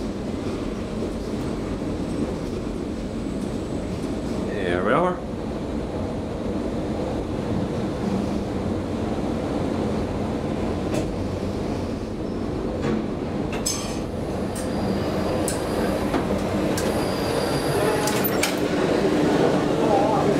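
1999 KONE inclined traction elevator running, with a steady rumble like a rail car on its track. There is a short rising squeal about five seconds in, and a few sharp clicks later on.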